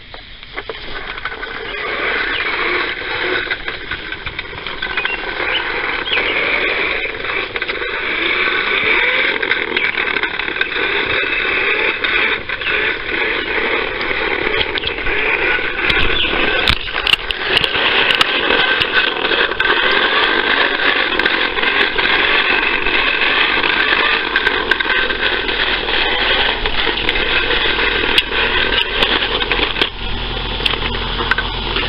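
Fisher-Price toy lawnmower being pushed along: a steady mechanical noise with scattered clicks, building up over the first couple of seconds.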